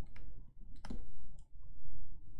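Stylus tapping and clicking on a tablet or touchscreen while handwriting: a few short, sharp clicks at uneven spacing, the loudest nearly a second in.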